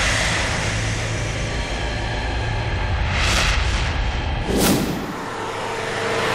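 Dramatic background score of a low rumbling drone, with two whooshes about three and four and a half seconds in; the second is the louder and sharper.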